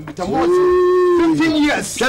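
A single long held vocal call: it rises into one steady note, holds for about a second and a half, then tails off.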